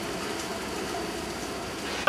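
Steady background noise, an even hiss and rumble with no distinct sounds in it: outdoor ambience picked up by the camera microphone.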